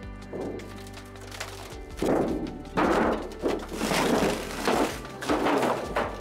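Thin sheet-metal water heater jacket being pulled off and handled, flexing and clattering in four loud rattling bursts about a second apart, over background music.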